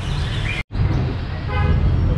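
Steady low rumble that cuts out for a split second under a second in, with a short horn-like toot about a second and a half in.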